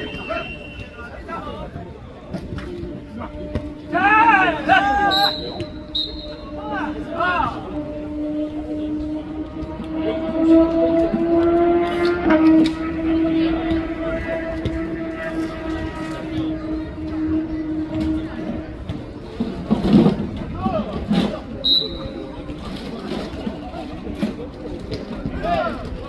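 Outdoor foot-volleyball game: players shout short calls, and the ball is kicked sharply a few times, with the clearest kick about twenty seconds in. A steady low drone runs through the middle of the stretch for about ten seconds.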